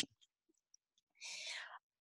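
Dead silence, then about a second in a short breath intake, half a second long, from the woman talking into a headset microphone between sentences.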